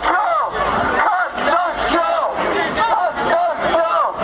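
Crowd of protesters shouting, many voices overlapping at once.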